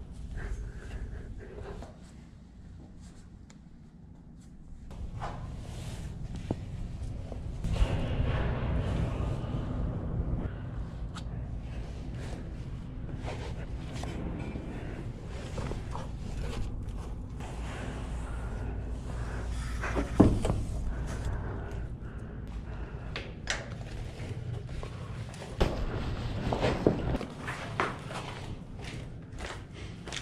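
Footsteps, scuffing and scattered knocks and thuds of someone climbing through old machinery, with a loud knock a little after two-thirds of the way in and a cluster of knocks near the end.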